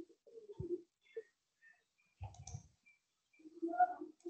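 A few scattered computer mouse clicks in a quiet room, with faint short bird calls in the background.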